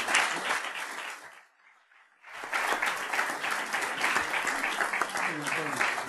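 Audience applause after a speech. It breaks off almost to silence for under a second about a second and a half in, then picks up again, with a voice starting under it near the end.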